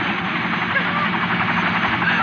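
Light helicopter hovering close to the ground: a loud, steady engine and rotor noise with a fast, even blade chop. Voices of a crowd rise over it.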